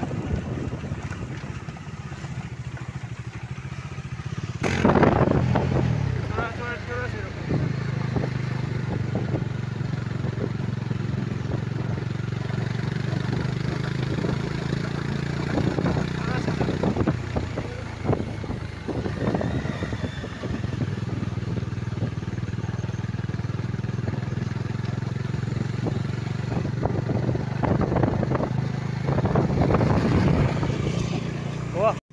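Motorcycle engine running steadily, heard from on a moving bike along with road and wind noise, briefly louder about five seconds in.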